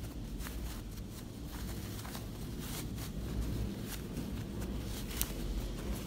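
Unbleached cotton fabric rustling and crumpling as a sewn bag and its lining are pushed and pulled right side out by hand, with scattered soft handling noises and one sharper click about five seconds in, over a low steady hum.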